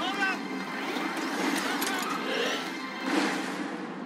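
Film soundtrack mix of a busy hangar: background voices and activity noise under music, beginning to fade out near the end.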